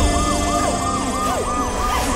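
Ambulance siren sound effect, a fast wail rising and falling about three times a second.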